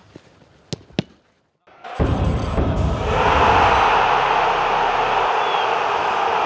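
Three sharp thuds of a football being kicked in the first second. After a short silence, a low boom opens a loud, steady rushing noise from the closing logo sting.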